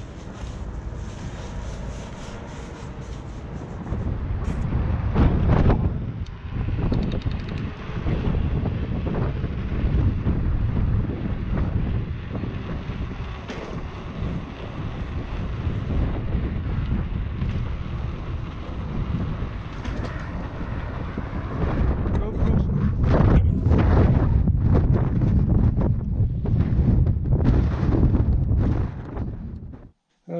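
Wind buffeting the microphone of a camera riding on a moving bicycle, a rough, gusting rumble, with motorway traffic running alongside.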